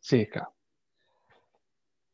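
A man's voice ending a spoken phrase about half a second in, followed by near silence.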